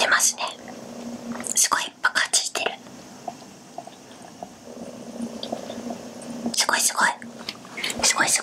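Soft whispered, breathy vocal sounds from a woman in three short bursts, near the start, around two seconds in and near the end, over a faint steady low hum.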